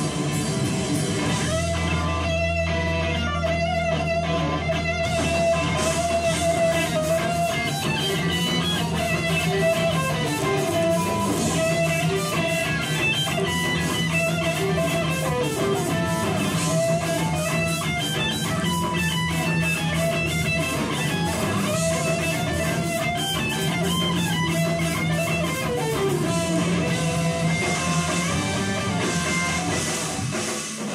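Live rock band playing an instrumental passage led by electric guitar, with bass and a steady drum beat on the cymbals, played loud through the venue's amplifiers.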